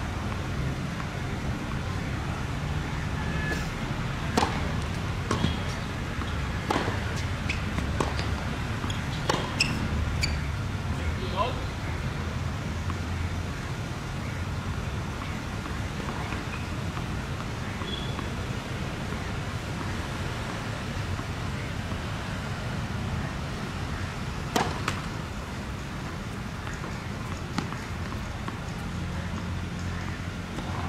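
Sharp tennis ball impacts, racket strikes and court bounces, about one a second for several seconds, then a single one much later, over a steady low background hum.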